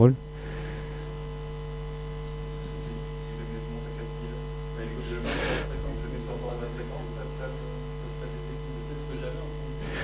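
Steady electrical mains hum, a low buzz with a stack of overtones, picked up by the microphone system. About halfway through, a brief faint sound rises over it.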